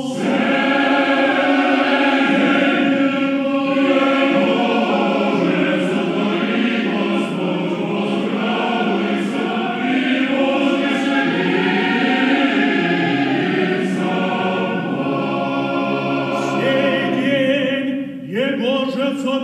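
Russian Orthodox church choir singing unaccompanied liturgical chant of a moleben, many voices holding sustained chords.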